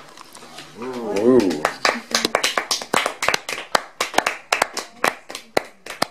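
A small group of people clapping their hands, a few seconds of applause, with one voice calling out briefly just before the clapping starts.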